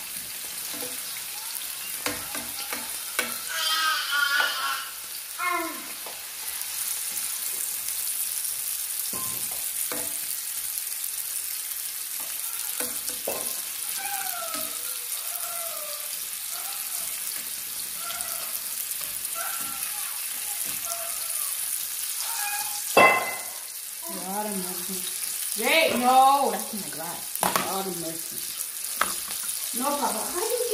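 Sliced hot dogs sizzling in hot oil in a nonstick frying pan, the sizzle growing steadier and stronger about a quarter of the way in, with a utensil tapping and scraping the pan now and then. A single sharp clack stands out about two-thirds of the way through.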